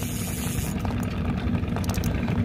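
Boat engine running steadily at a low hum, with a few faint clicks near the end.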